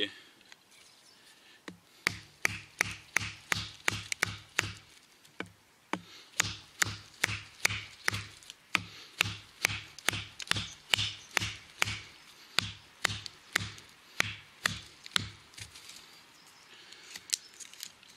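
A wooden baton striking the spine of a fixed-blade knife, driving the blade through a very hard, bone-dry dead larch branch. Steady knocks, about three a second, begin about two seconds in and stop a couple of seconds before the end.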